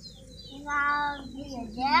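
A child's long drawn-out vocal sound, then a quick rising 'yeah' near the end, over small birds chirping in the background.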